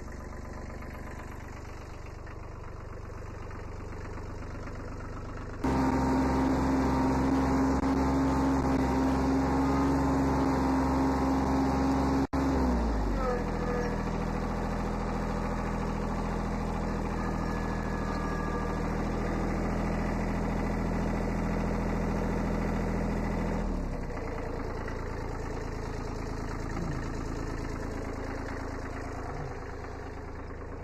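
1981 Kubota B7100 HST tractor's three-cylinder diesel engine running steadily. It is quieter for the first few seconds, then louder and at higher revs. About halfway through the revs drop, and near the end it settles quieter.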